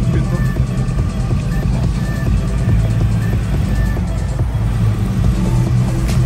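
Custom hot rod pickup's engine running with a steady, loud low rumble as the truck drives slowly past, heard over background music.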